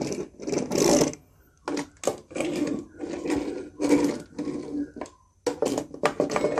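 Plastic wheels of DX Goseiger toy mecha rolling back and forth on a wooden tabletop in a series of short strokes, with a mechanical whirr.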